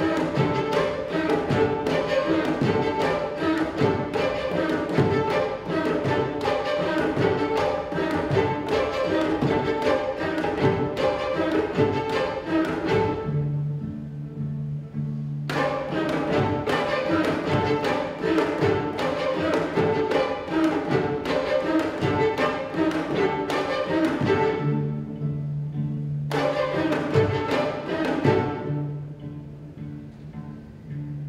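String orchestra of violins, violas, cellos and double bass playing a fast, rhythmic passage of sharp accented strokes. Twice, about 13 seconds in and again around 25 seconds, the upper strings drop out and leave low held notes in the cellos and bass before the full ensemble comes back in; near the end the texture thins out.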